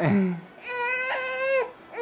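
A young baby crying: one long, steady wail lasting about a second in the middle, after a short falling cry right at the start.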